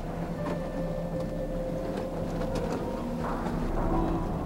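Small outboard motor running steadily, driving a boat through broken lake ice, with a few light clicks and knocks over the hum.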